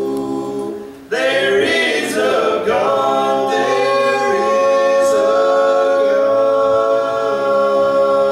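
Male vocal quartet singing a cappella gospel harmony. A held chord dies away about a second in, the voices come back in together with moving parts, then settle into a long held chord.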